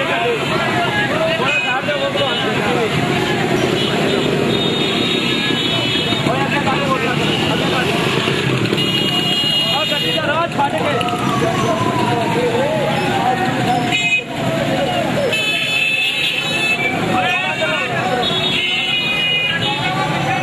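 Busy street traffic of motorcycles and cars moving slowly in a crowd, with vehicle horns tooting several times and loud voices shouting throughout.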